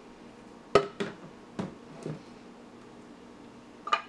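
A handful of short, sharp knocks as a blender pitcher and spatula bump against a glass jar while thick almond butter is scraped out. The loudest comes just under a second in, and another comes near the end as the pitcher is lifted away.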